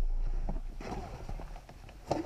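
A low rumble dies away just after the car's driver door slams shut. Then come a few light clicks and knocks of hands moving about the cabin.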